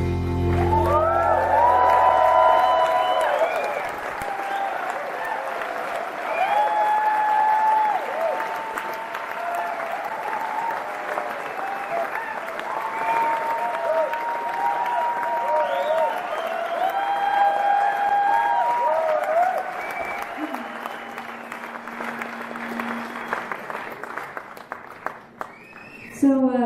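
A concert audience applauding and cheering with whoops, as the band's final chord dies away in the first few seconds. A steady low note is held for a few seconds about twenty seconds in, and the applause thins out near the end.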